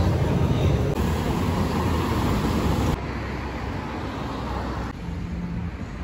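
Steady background rumble and hiss with no single clear source. It steps quieter about three seconds in, and again near the end.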